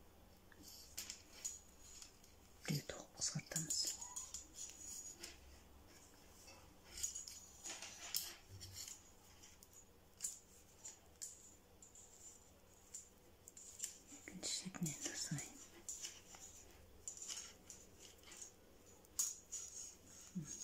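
Metal knitting needles clicking and scraping against each other in short, irregular runs, with yarn rubbing, as stitches are knitted together to decrease.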